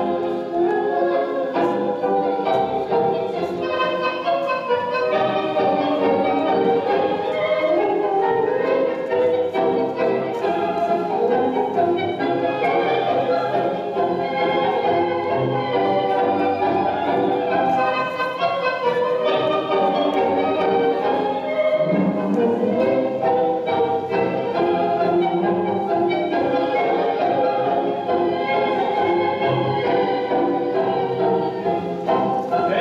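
Tango music from an orchestra with strings, playing steadily.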